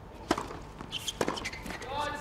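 Tennis ball hits during a rally on a hard court: two sharp strikes about a second apart.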